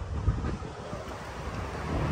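Wind buffeting the microphone, a steady low rumble, with one brief thump about a quarter of a second in.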